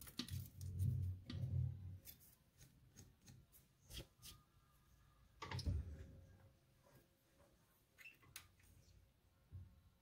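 Faint metallic clicks and knocks of lathe tooling being handled while the toolpost and tool holder are set up by hand. Dull thumps come in the first two seconds, then scattered sharp clicks, the loudest about four and six seconds in.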